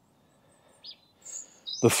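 A couple of brief, high bird chirps against a quiet outdoor background about a second in, then a man's voice starts near the end.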